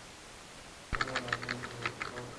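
Typing on a computer keyboard: after about a second of quiet, a quick run of roughly ten keystrokes.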